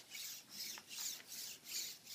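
PhantomX hexapod robot walking: its Dynamixel leg servos whir in a rhythmic rasping pulse, about three pulses a second, in step with the gait.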